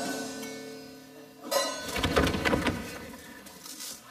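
The last sung chord of a carnival chirigota, with its guitar accompaniment, holds and fades away. About a second and a half in, a sudden burst of clapping and noise rises and dies down.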